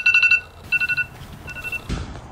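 Smartphone ringing with a rapid electronic trill: one longer burst, then two shorter bursts. A brief knock comes just before the end.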